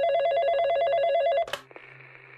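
Telephone ringing with a rapid two-tone warble, cut off by a click about one and a half seconds in, then a faint steady line hiss.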